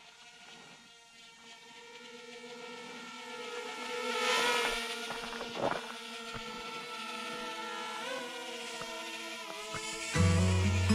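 Small quadcopter drone's propellers whining overhead. The whine grows louder as the drone comes close and is loudest about halfway through, with a single knock just after.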